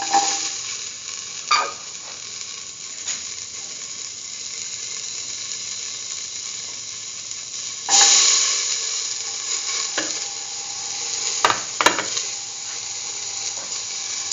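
Oil sizzling in a steel pan with fennel seeds, nigella seeds, ginger and garlic frying. About eight seconds in, whole peeled shallots go into the pan and the sizzle jumps louder, with a few sharp clicks against the pan.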